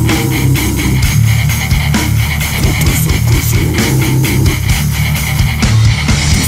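Australian death metal recording: low, heavy electric guitar riffing over bass guitar, with dense, rapid drum hits throughout.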